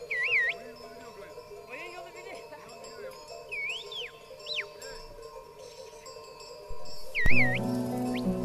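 A flock of sheep bleating faintly under soft background music, with a few high wavering whistles. The music swells back in loudly near the end.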